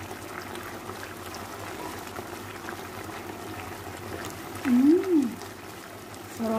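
Barbecue-sauced chicken pieces simmering in a frying pan: a steady bubbling, sizzling hiss with a few small pops. About five seconds in, a person gives one short hum that rises and falls in pitch.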